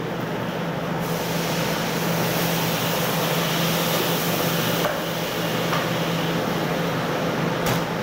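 Steady hum and rush of air from a fan or air-conditioning unit, with a few faint knocks as a roast duck is handled on a wooden chopping block, about five seconds in and near the end.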